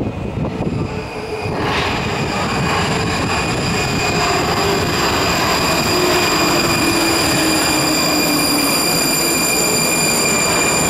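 81-71M metro train arriving at the platform: wheel and track noise builds from about two seconds in and holds, with several steady high-pitched whines over it and a lower whine that falls in pitch as the train slows.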